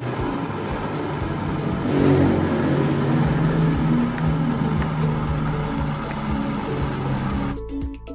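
Handheld butane gas torch flame hissing steadily while heating a copper refrigeration tube joint, with background music underneath. The flame noise cuts off suddenly near the end.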